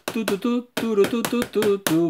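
Two pairs of scissors snipped open and shut in the air, making rapid metal clicks at about seven or eight a second. A man's wordless vocalizing runs along with them.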